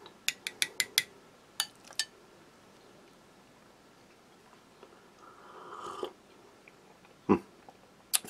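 A spoon clinking against a ceramic mug about seven times in the first two seconds as black pepper is stirred into the soup, then a short slurping sip of the soup around six seconds in, and a single knock near the end.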